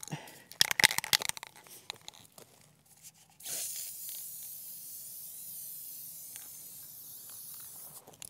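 Aerosol can of Rust-Oleum clear dead flat topcoat being shaken, with a quick run of rattling clicks. Then, about three and a half seconds in, it is sprayed in one long, steady hiss.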